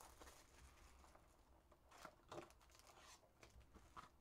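Near silence with a few faint rustles and crinkles of a cardboard trading-card box and its foil-wrapped pack being opened, about halfway through.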